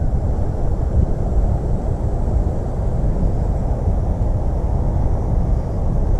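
Wind buffeting the camera's microphone outdoors: a steady, low, pitchless rumble.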